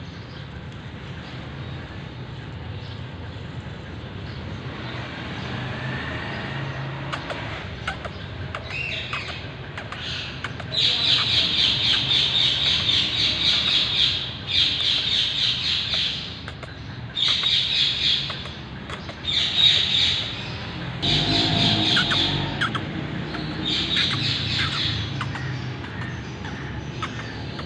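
Birds calling in repeated bursts of rapid, high-pitched chattering, each burst one to three seconds long, starting about ten seconds in, over a low steady rumble.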